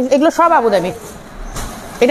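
A woman speaking, then, about a second in, a short stretch of even noise without a voice.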